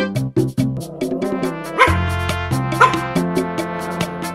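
Background music, with a Pomeranian giving two short yips about two seconds in and again a second later.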